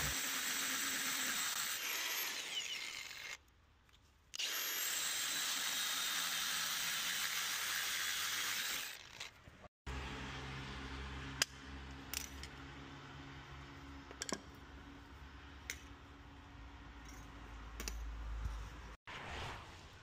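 Power drill with a diamond core bit cutting into a stone threshold: a steady grinding hiss in two stretches of several seconds with a brief break between them. Then, in the second half, much quieter: a low hum with a few scattered clicks of small parts being handled.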